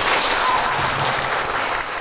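Theatre audience applauding at the end of a song, dense and steady clapping.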